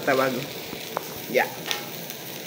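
Winged termites (aku) frying in their own fat in a dry metal pan, with a steady sizzle as they are stirred with a wooden spatula. A single sharp click comes about a second in.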